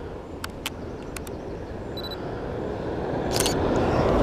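DSLR camera in use: a short high autofocus beep and a few sharp shutter clicks, with a quick cluster of clicks about three seconds in. A rising rush of noise builds toward the end.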